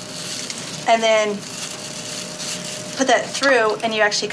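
Bottle brush scrubbing the inside of a skull: a steady scratchy hiss, with short bits of a woman's voice about a second in and near the end.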